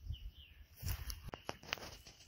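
A few quiet crackles and clicks of footsteps and handling in dry leaf litter and twigs on the woodland floor, bunched in the second half.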